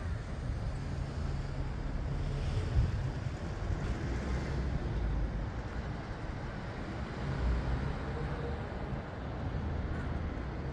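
Wind rumbling on the microphone in uneven gusts, over a steady wash of distant city noise.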